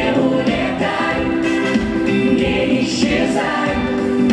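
Amplified mixed vocal ensemble of men and women singing held chords in harmony into microphones, the chords changing about once a second.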